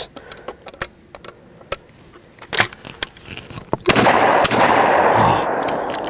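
A few small clicks as shells go into a Hatfield over-and-under 12-gauge shotgun and the action is closed. About four seconds in the shotgun fires twice, about half a second apart, and a long echo fades over about two seconds.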